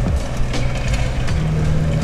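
A machine's engine running steadily, a low drone that holds on with no break.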